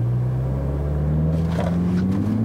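2018 Mini Clubman John Cooper Works' turbocharged 2.0-litre four-cylinder, heard from inside the cabin, held at raised revs against the brakes with its pitch creeping slowly upward. The car is being brake-torqued before a launch.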